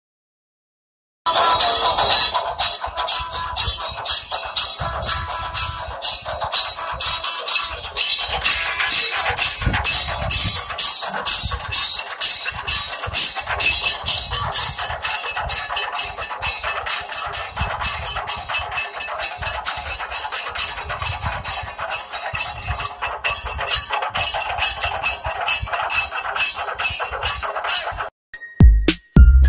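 Percussion music with a fast, steady beat of drums and bright metallic percussion, starting suddenly about a second in after a brief silence.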